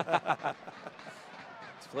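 A man's commentary voice briefly at the start, then faint, even background noise from the match broadcast until the voice picks up again at the very end.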